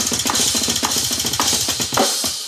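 Drum kit played fast: rapid, even bass drum strokes under a continuous cymbal wash, with a harder snare hit about every half second.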